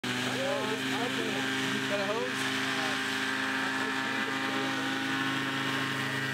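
Paramotor engine running at a steady speed, a constant droning hum. Voices can be heard over it in the first two seconds or so.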